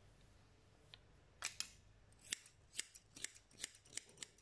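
Hair-cutting scissors snipping through a section of long hair: a run of quiet, crisp snips, about two a second, starting about a second and a half in.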